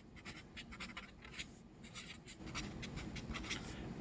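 Marker pen writing on a sheet of paper backed by a wooden board: a quiet, quick run of short scratchy pen strokes as words are written out.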